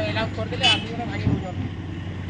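A man speaking in Hindi for about the first second, over a steady low engine hum in the background.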